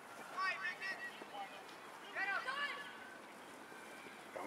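Distant shouting voices at a football game: two short high-pitched yells, one about half a second in and one just after two seconds, over faint background crowd noise.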